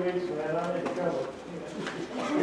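Indistinct speech from a congregation member away from the microphone, a voice answering the call for prayer requests; it trails off about halfway through.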